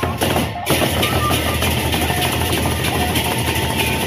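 Gendang beleq ensemble: several large double-headed Sasak barrel drums beaten with sticks. A few separate strokes open, then from under a second in the drumming runs dense and continuous with a deep rumble.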